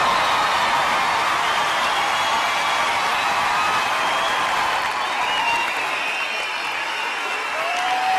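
Studio audience applauding and cheering, easing off a little in the second half.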